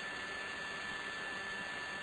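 Steady hiss of the recording's background noise, with a faint steady high whine running through it.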